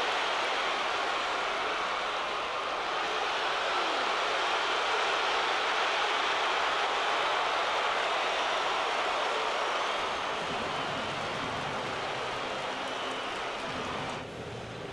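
Large stadium crowd cheering a home-team run, a steady roar that swells at the start and eases off about ten seconds in.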